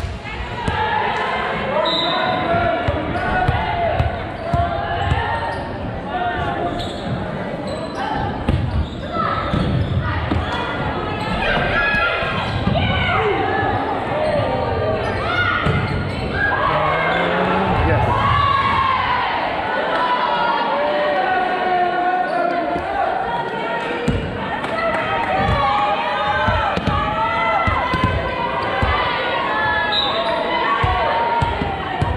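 A volleyball bounced on a wooden gym floor before a serve and struck during a rally, with repeated short thumps, under many overlapping voices of players and spectators calling out and echoing in the hall.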